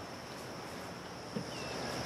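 Quiet outdoor garden ambience: a faint steady hiss with a thin, high, steady tone running through it, and a single soft tap about a second and a half in.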